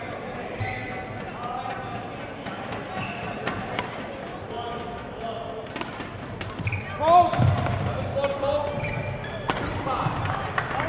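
Badminton rally: scattered sharp racket strikes on the shuttlecock and players' footwork on the court, with background voices. About seven seconds in comes a short, loud squeal, the loudest sound.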